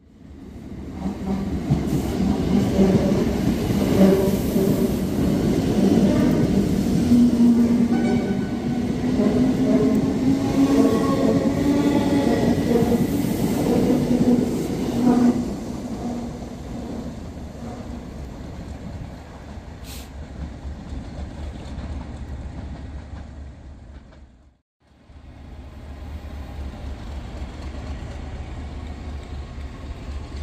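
Class 321 electric multiple unit running through the station, its traction motors giving a loud steady hum that rises slowly in pitch and fades after about 15 seconds into a quieter rumble. After a short break near the end, passenger coaches roll past with a steady running rumble.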